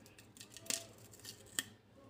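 A few light clicks and scrapes of a thin metal pick prying at the edge of a small Bluetooth speaker's top cap to open it. The sharpest click comes about two-thirds of a second in and another near the end.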